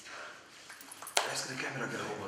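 A woman speaking to a group in a room, quietly at first, then louder after a single sharp click about a second in.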